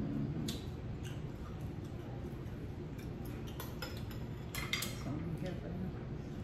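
Scattered light clicks and clinks of a spoon against a small sauce bowl and of crab shells being handled at the table, a few at a time with short gaps between them.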